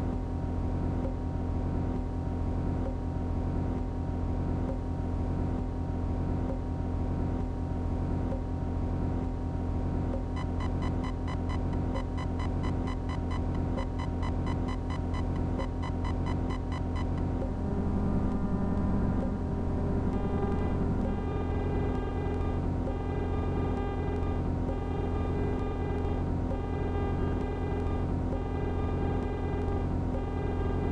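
Live-coded electronic music from TidalCycles patterns: a sustained low drone sample under a steady pulse. From about ten seconds in a fast stuttering, chopped texture comes in, giving way at about eighteen seconds to chopped, repeating pitched notes.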